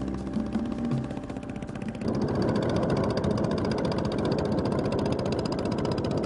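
Motorboat engine running steadily as a long wooden fishing boat goes by, louder from about two seconds in. Music fades out in the first second or so.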